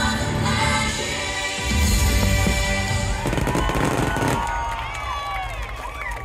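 Fireworks show soundtrack music with fireworks bursting. A little past halfway the music's bass drops away, leaving fireworks crackling in quick pops with high rising and falling whistles.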